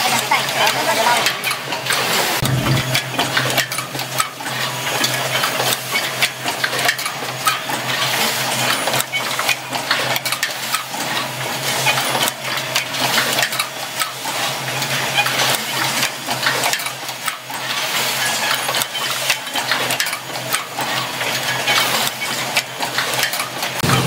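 Pneumatic micro switch automatic assembly machine running: rapid, irregular metallic clicking and clinking over a steady low hum.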